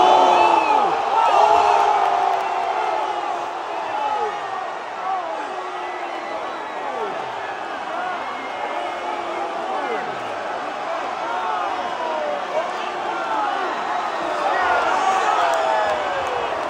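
Arena crowd yelling and cheering as a boxer is knocked down and the fight is stopped, many voices overlapping. Loudest right at the start, easing off, then swelling again near the end.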